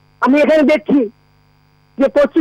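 A caller's voice over a telephone line, one short phrase about a second long, with a steady electrical hum under it that carries on through the pause after it.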